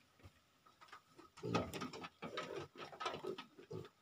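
Crossbred piglets grunting softly, with a light patter of hooves on the metal truck bed, starting about a second and a half in.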